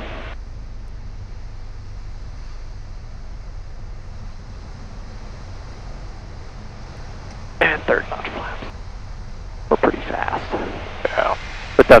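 Steady drone and hiss of a Piper Cherokee 180 in flight, its four-cylinder Lycoming engine and airflow heard through the cockpit intercom feed. Brief voices come in about eight and ten seconds in.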